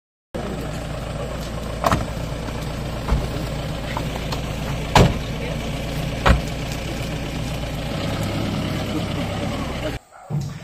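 A vehicle engine idling steadily, a low even rumble, with a few short sharp knocks on top.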